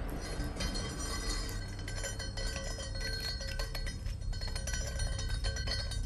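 Film soundtrack music of several steady ringing tones held together, with a run of quick light clicks in the middle.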